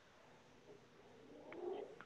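Near silence: quiet room tone over a video call, with a faint low murmur in the last half second.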